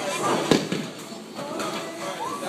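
A single sharp bang of an impact in a bowling alley about half a second in, over background chatter.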